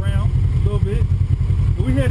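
Off-road vehicle engine idling with a steady low rumble, a voice talking over it.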